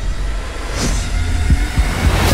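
Trailer sound design: a loud, deep bass rumble with a whoosh about a second in and a couple of low thumps near the end.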